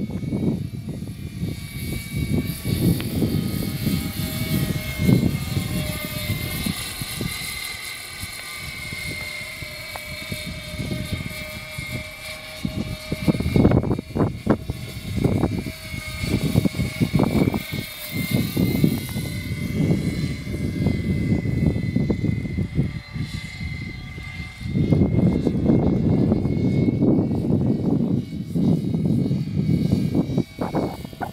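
Radio-controlled scale CV-22 Osprey tiltrotor model flying overhead: a steady high whine from its rotors that drifts slightly in pitch as it passes. Underneath is a gusty low rumble, heaviest in the last few seconds.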